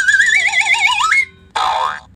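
Cartoon sound effect: two wavering tones climbing in pitch with an even wobble, the lower one sweeping up sharply just after a second in, followed by a short swish near the end.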